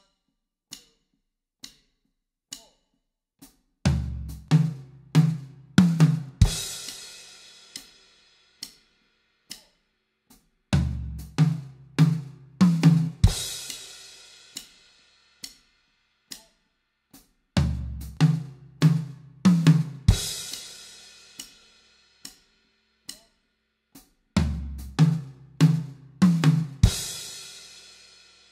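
Acoustic drum kit playing a tom fill four times: strokes on every third sixteenth note, moving from floor tom to medium tom and up to high tom. Each pass ends on two eighth notes, medium tom then crash cymbal with bass drum, and the crash rings out. Short, evenly spaced clicks keep time between the passes.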